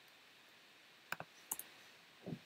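A few keystrokes on a computer keyboard: a quick pair of clicks about a second in, then a short cluster of clicks half a second later, over faint room tone.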